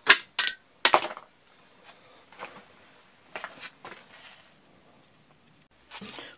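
Sharp knocks and clatters of a homemade pipe rat trap's wooden drop door and plastic pipe being handled on a workbench. There are three loud knocks in the first second, then a few fainter taps.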